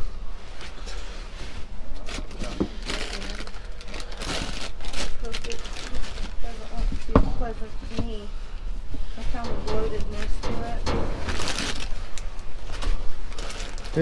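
Plastic food packaging (bagged salads and plastic tubs) crinkling and rustling in irregular bursts as a gloved hand rummages through it, with occasional knocks against cardboard boxes.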